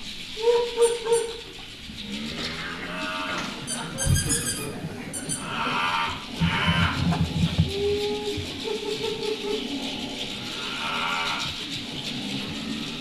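Solo percussion with hand-held sound toys. Short mooing calls from a small noisemaker come near the start and again about eight seconds in. A rattle is shaken about four seconds in, and there is low drumming around six to seven seconds.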